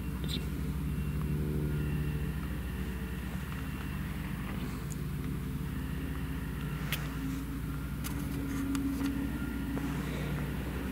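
Grimme Varitron 470 Terra Trac self-propelled potato harvester working: a steady low engine drone with machinery hum, and a few sharp clicks and rattles from the harvesting gear.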